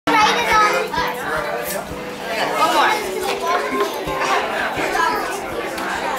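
Busy hubbub of many children and adults talking at once in a crowded room.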